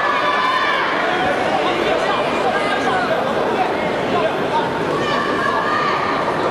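Crowd of spectators in a hall shouting and calling out, many voices overlapping at once, some high and drawn out.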